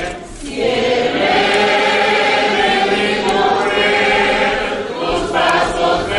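Church congregation singing a verse of a hymn together, holding long notes. There is a short break between lines just after the start, and a new line begins near the end.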